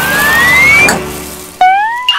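Cartoon sound effects over music: a smooth rising whistle glide for the first second, then a sudden loud, high-pitched yelp-like cry about one and a half seconds in that rises in pitch and holds.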